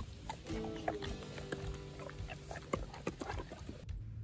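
A dog eating a treat taken from a hand, with wet mouth noises and short crunching clicks. Background music with steady held notes comes in about half a second in.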